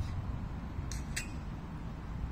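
Two short high chirps about a quarter of a second apart, over a steady low outdoor rumble.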